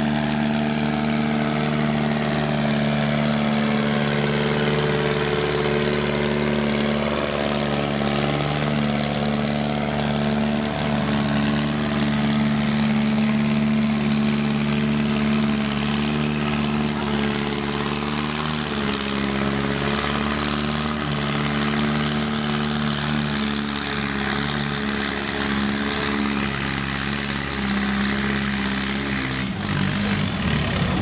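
Farmall M tractor's four-cylinder engine, fuel turned up, running flat out under load while pulling a weight-transfer sled. Its steady note drops slightly in pitch about two-thirds of the way through and breaks off abruptly near the end.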